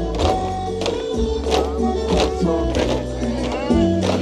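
Music with a steady beat for a bamboo-pole dance, with sharp clacks in time with it, about three every two seconds: the bamboo poles being knocked together.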